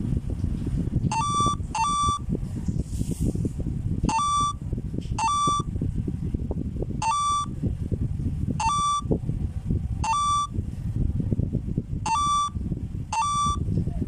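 A mobile face-filter game's electronic beeps, about ten short blips at uneven intervals, some in quick pairs, each a single tone held a moment. A steady low rumbling noise runs underneath.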